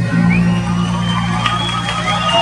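Amplified live concert music heard from a few buildings away, with steady held low notes, while the crowd cheers and whoops over it.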